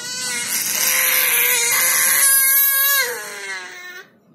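Baby screaming in anger: one long, loud, high-pitched scream that holds for about three seconds, then drops in pitch and fades away.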